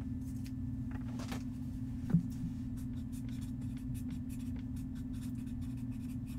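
Light scratchy rustling and small ticks of things being handled on a table, with one thump about two seconds in, over a steady low hum.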